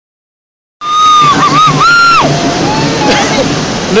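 Toddler wailing in fright at the car wash: a loud, high, wavering cry starting almost a second in, which breaks and drops to a lower sob about two seconds later, over the steady wash of the car wash outside.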